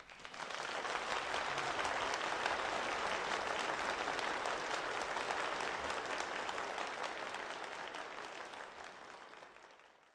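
Crowd applause, many hands clapping together. It swells in over the first second, holds steady, then fades away near the end.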